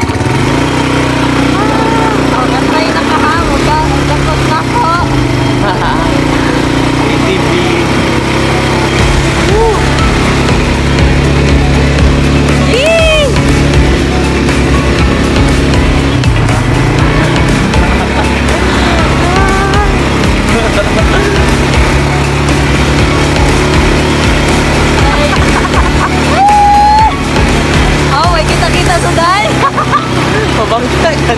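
An ATV engine running steadily under way, with wind on the microphone and the riders' laughter and shrieks over it.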